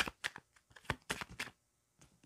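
Tarot cards being shuffled in the hand: a quick run of sharp papery snaps that stops about one and a half seconds in.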